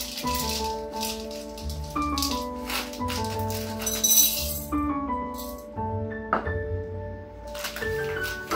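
Background music playing steadily, over the rattle of chocolate chips being poured from their bag into a plastic measuring cup and then tipped into a glass bowl; the loudest pour comes about four seconds in.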